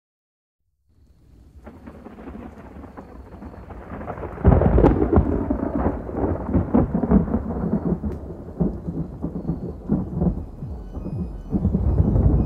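Thunderstorm sound effect: rain and rumbling thunder fade in after about a second of silence and build up, breaking into a loud thunderclap about four and a half seconds in, then rolling and crackling on.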